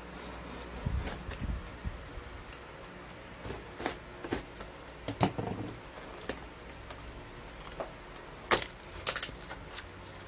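Cardboard mailing box being cut and pulled open by hand: scattered rustles and crackles of cardboard, a dull knock about a second in, and a couple of sharp snaps near the end as the end flap is torn open.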